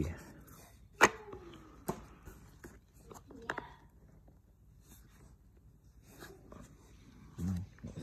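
Baseball cards being handled and set down on a wooden table, with one sharp knock about a second in. Faint voices in the background.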